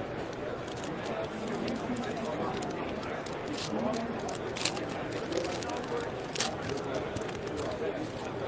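Steady crowd chatter, with a few sharp crinkles from a foil trading-card pack wrapper being torn open and handled.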